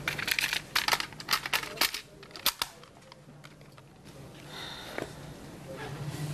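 Plastic clicks and snaps from a portable cassette player being handled: about a dozen sharp clicks over the first two and a half seconds, as its lid and buttons are worked, then quieter handling.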